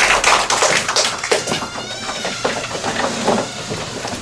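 Audience clapping that thins out and stops about a second and a half in, followed by a few faint high-pitched squeaks.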